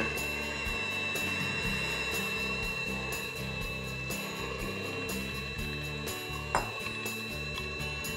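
Background music over a KitchenAid electric hand mixer running steadily in chocolate pie batter, with a constant high-pitched whine. One short knock about six and a half seconds in.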